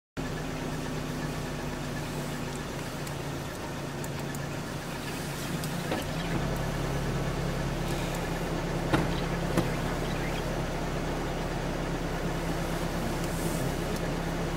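A motor vehicle's engine idling steadily, its low hum shifting and growing a little stronger about six seconds in. Two short clicks come near the middle.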